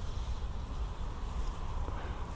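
Faint, steady low rumble of distant road traffic, with even outdoor hiss.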